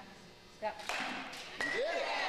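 A baseball bat hitting a ball off a batting tee: one sharp hit about half a second in, followed by excited voices near the end.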